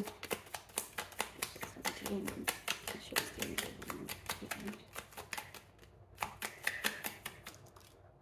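Deck of tarot cards shuffled by hand, a quick run of card-edge clicks and flaps that thins out about five seconds in, with a short flurry again near the end.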